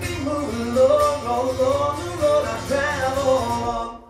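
Acoustic guitar strummed with a male voice singing a wordless closing line at the end of a song; everything stops suddenly near the end.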